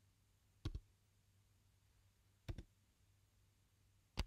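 Two computer keystrokes typing digits, each a quick double click of key press and release, about two seconds apart, against near silence.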